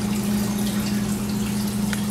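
Aquarium filter pump running: a steady low hum with water trickling and dripping.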